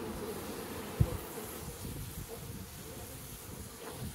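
Steady hum of a strong honeybee colony in an open nuc box, with a brief low thump about a second in.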